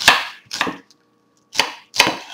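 Chef's knife chopping onion into a small dice on a wooden cutting board: sharp knocks of the blade through the onion onto the board, about four strokes with a pause of nearly a second in the middle.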